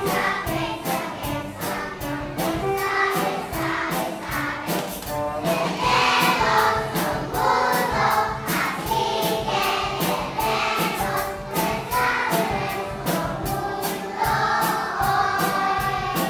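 A group of young children singing a song together over backing music with a steady beat.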